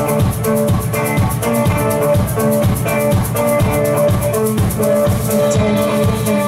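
Live instrumental passage of electric violin plucked with the fingers like a ukulele, over a drum kit keeping a quick, even rhythm with a rattling, shaker-like high beat.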